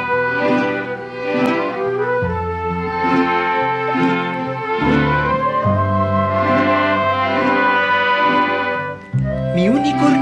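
Instrumental introduction to a slow ballad: violins and other bowed strings play a sustained melody over held bass notes. The music dips briefly near the end.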